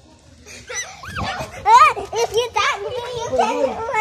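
Young children's excited high-pitched cries in play, starting about half a second in: a run of short calls that rise and fall in pitch, loudest near the middle.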